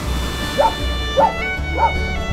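Three short, high dog yips about 0.6 s apart, over background music with sustained string tones.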